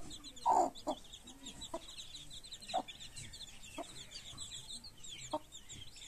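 Chicks peeping in a continuous high-pitched chatter, with a mother hen clucking low about once a second; one louder call comes about half a second in.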